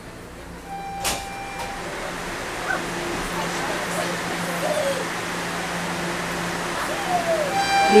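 Inside a TTC subway car stopped at a station with its doors open: a steady low hum and a hiss that slowly grows louder, with faint passenger voices and a sharp click about a second in.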